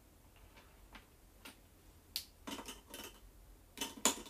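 Light, sparse clicks and taps, a few about half a second apart, then a denser run of them with a brief murmured syllable about two and a half seconds in.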